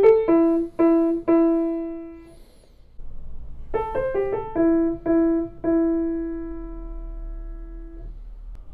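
Bechstein grand piano playing a short melodic phrase in the middle register: a few quick notes settling on a held note. After a brief pause the same phrase is played again, probably on the c.1892 Bechstein Model III 240 cm grand for comparison with the brighter Model V, and its last note rings on and slowly dies away.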